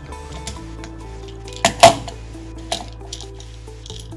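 Background music with sustained notes, over which come two sharp plastic clicks close together a little before two seconds in, the second the loudest, and a fainter click about a second later: the red plastic gear and omni wheel assembly being handled as circle inserts are pressed into the gear.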